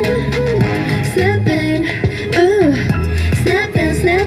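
Pop song playing loud: a sung vocal melody over a steady drum beat and bass.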